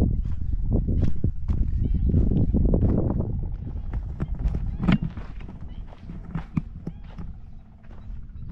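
Footsteps crunching along a sandy dirt track, an irregular run of soft steps and scuffs. Under them is a low rumble of wind on the microphone, heavier in the first half of the clip.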